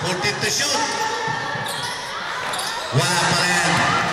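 Basketball being dribbled on an indoor court floor, with several sharp bounces close together at the start, amid players' voices and shouts that echo in the large hall.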